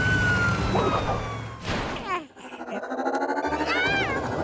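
Cartoon fire truck siren wailing in one long, slowly falling sweep over a low engine hum, cut off about two seconds in by a swish. Near the end a warbling electronic whir rises as the flying disc sails past, over background music.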